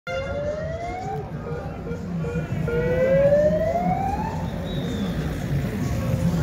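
A siren sounding in two rising wails, the second longer and louder, over low street and crowd noise.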